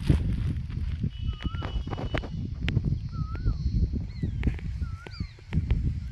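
Outdoor field sound: a low, uneven rumbling and scuffing of movement over dry soil, with a few sharp clicks. Over it a bird gives three short wavering whistled calls about two seconds apart, with a couple of higher falling chirps near the end.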